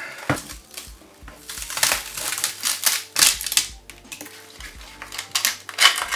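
Support material being snapped and broken off an FDM-printed PLA model by hand: irregular sharp cracks and crunches coming in clusters, over quiet background music.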